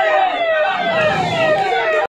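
Emergency vehicle siren wailing in quick, repeated falling sweeps, about two a second.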